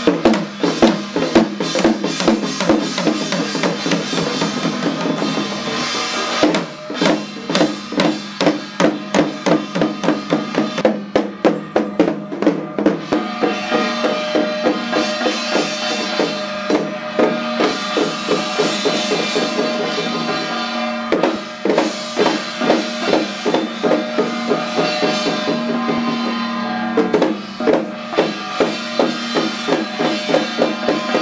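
Fast, continuous ritual drumming on hand-held frame drums and small hand drums beaten with sticks, with a few brief breaks, over a steady ringing tone.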